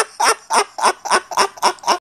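A man laughing hard in a rapid run of high-pitched cackles, about four a second.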